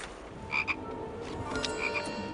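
Frog croaks, two short high chirps about half a second in and two more near the end, over a faint steady background rumble.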